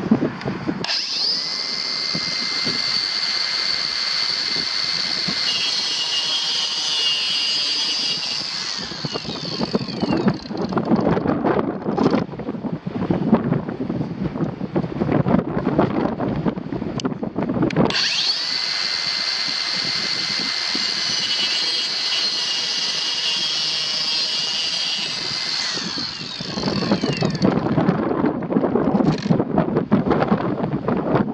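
Kobalt 24-volt brushless 4-inch cordless circular saw cutting a wooden board twice: each time the motor spins up to a steady high whine, the blade goes through the wood, and the saw winds down, each run lasting about eight seconds. Between and after the cuts, wind rumbles on the microphone.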